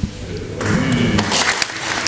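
Handling noise from the camera being moved: a soft knock as the guitar's ringing stops, then about a second and a half of rustling and scraping with small clicks.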